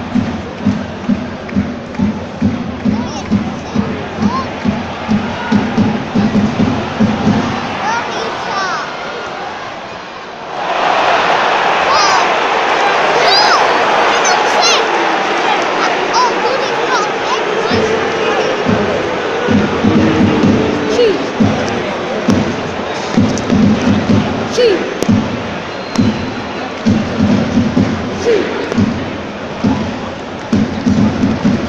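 Football crowd in a stadium stand: a regular low thumping about two to three times a second, then a sudden swell of crowd noise with whistling about ten seconds in that lasts some seven seconds, after which the steady thumping returns.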